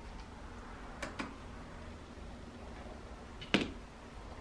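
A few light clicks as a laptop motherboard and its plastic case are handled: two close together about a second in, and a sharper knock about three and a half seconds in, over a low steady hum.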